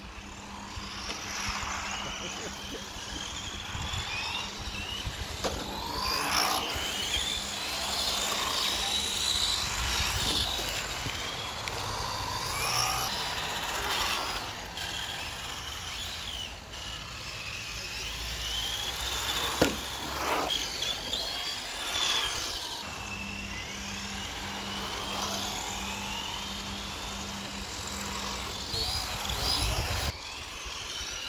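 Electric 1/10 scale Tamiya TT-01/TT-02 RC cars running on tarmac, their motors whining up and down in pitch as they accelerate and slow through the corners, with a sharp knock about twenty seconds in.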